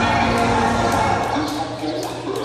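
Jump rope slapping the gym floor in a quick, even rhythm, about three to four slaps a second, with the jumper's landings.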